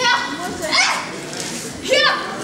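Three sharp, high-pitched shouts from young taekwondo students: kihap yells given with their strikes. One comes at the start, one just under a second in, and one at the end.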